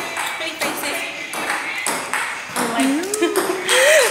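Several women's voices calling out and vocalizing with no clear words, with a long gliding, sung-out voice in the second half.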